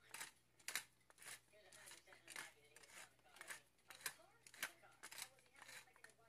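Wooden pepper mill grinding black peppercorns: faint, crunching clicks about two a second as the mill is twisted.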